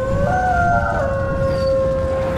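Wolf howl sound effect: a single howl that rises in pitch, then settles about a second in into a long held note, over a deep rumble.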